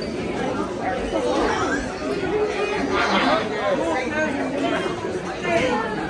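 Several people talking at once, overlapping chatter with no single clear voice.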